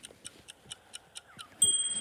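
Cartoon timer sound effect: quiet, quick ticking at about six ticks a second, then a short bright ding near the end as time is called, played through a phone's speaker.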